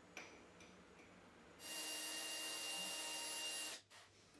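A few light clicks as a small brass part is set down on a brick. Then a small benchtop metal lathe (Optimum TU 2304) runs with a steady whine for about two seconds and cuts off sharply.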